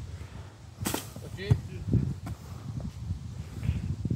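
A football kicked once, a sharp thump about a second in, with a brief vocal sound just after and a low rumble underneath.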